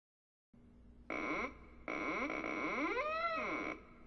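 Eerie synthesized horror sound effect: a short loud burst about a second in, then a longer noisy electronic drone with pitch sweeps gliding up and down, which cuts off abruptly near the end, over a low hum.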